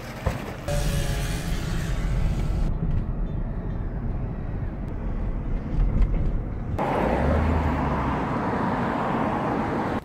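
Chevrolet Tahoe SUV driving, its engine and road noise heard from inside the cabin as a steady low rumble. The sound changes abruptly a few times, and from about seven seconds in there is louder road hiss.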